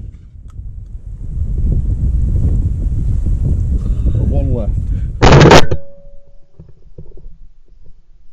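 Low rumble of wind on the microphone, then one loud shotgun shot a little after five seconds in, with a brief ring after it.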